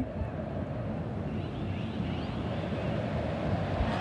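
Steady noise of a large football stadium crowd.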